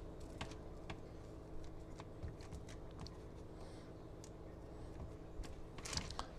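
Faint, irregular soft taps of fingers pressing cookie dough balls flat on a parchment-lined baking sheet, over a low steady hum.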